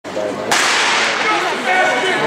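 A starting pistol fires once about half a second in, a sharp crack that rings on in a large indoor hall, signalling the start of a sprint race.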